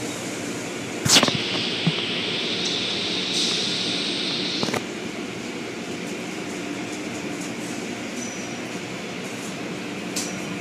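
Automatic car wash tunnel running behind a window: a steady machine hum with the swish of spinning cloth-strip brushes and water spray. A sharp knock comes about a second in. A hissing spray starts around two and a half seconds and cuts off suddenly just before five seconds.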